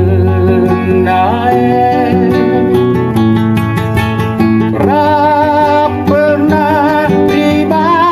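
A song: a voice singing with instrumental accompaniment, the sung melody coming in strongly with wavering held notes about five seconds in.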